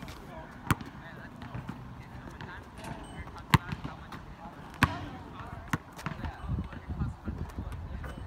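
Basketball thudding on an outdoor asphalt court: four sharp thuds, the loudest about three and a half and five seconds in.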